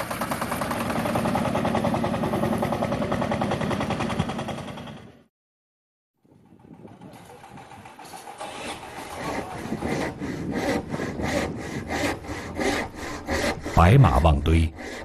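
A tractor engine running steadily, fading out about five seconds in. After a second of silence, hand sawing of wood builds up in even strokes, about three to four a second, louder near the end.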